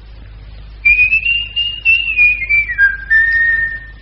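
A person whistling a short phrase: a single high pitch moving through a few wavering notes, dropping lower near the end and holding one steady note.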